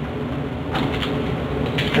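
Steady low room hum, with a faint rustle as thin, flexible bioplastic sheets are handled and laid down on a table.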